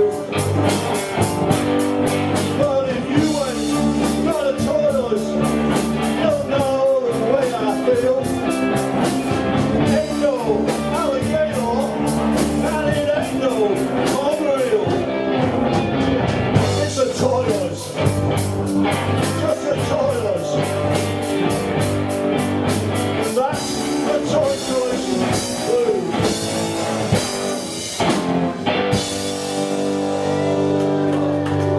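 Live rock band playing a blues number on electric guitars, bass and drums, loud and continuous, with a lead line of bending, sliding notes over the band.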